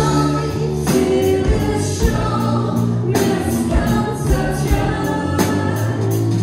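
Live rock band playing: drum kit, electric guitar, bass and keyboards with a singer's voice over them, the drums striking at regular intervals under sustained chords.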